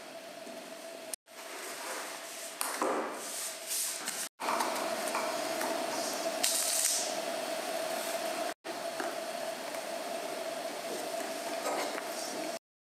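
Small brass upholstery nails clinking in a plastic box as fingers pick through them, the loudest clatter a little past the middle. Around it are handling noises of fabric and tools over a steady tone, with three brief dropouts to silence.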